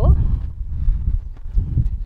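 Footsteps of a person walking on a concrete rooftop, a few light irregular taps over a low rumble of wind on the phone's microphone.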